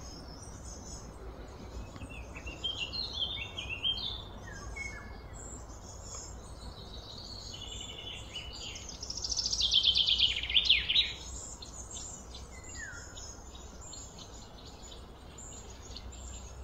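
Birds chirping and calling over a steady low background hum, with a short stepped run of falling notes a couple of seconds in. The loudest is a rapid run of notes falling in pitch, about nine to eleven seconds in.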